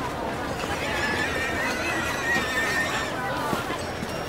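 Horse whinnying: one long, wavering high call lasting about two and a half seconds, over a steady background of crowd voices and street noise.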